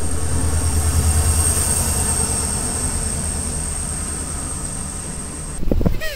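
Passenger train passing close by: a steady low rumble of the carriages with a thin high whine over it, slowly fading. It cuts off suddenly shortly before the end.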